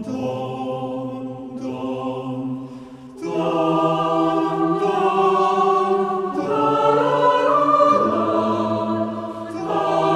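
A choir singing slow, sustained chords that change every couple of seconds, briefly fading about three seconds in before coming back fuller.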